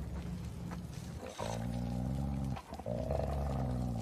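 Two long, low roars, each about a second, the first about a second and a half in and the second near the end, over a low rumble.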